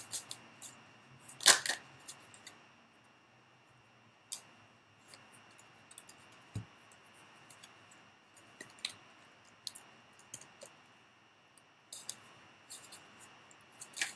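Oracle cards being handled and shuffled by hand: scattered light clicks and taps, with a louder snap about a second and a half in.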